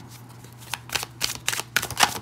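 A deck of tarot cards being shuffled by hand: a quick run of sharp card snaps starting about two-thirds of a second in, loudest near the end.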